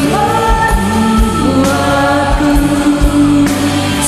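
A woman singing a slow worship song into a microphone, holding long notes, over band accompaniment with low drum beats.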